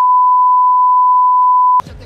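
A loud, steady, single-pitch beep: the reference test tone that goes with television colour bars. It holds one note for almost two seconds and cuts off suddenly near the end.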